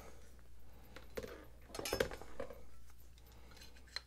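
Light clinks and taps of steel kitchen knife blades against a plastic digital caliper as it is lifted off one blade and its jaws are set onto the next, clearest about two seconds in.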